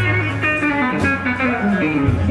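Stratocaster electric guitar playing a blues line with bent notes over the band's drums, with a cymbal hit about a second in.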